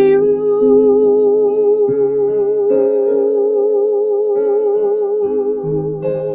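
A woman singing one long held note with vibrato, accompanied by piano chords that change several times beneath it.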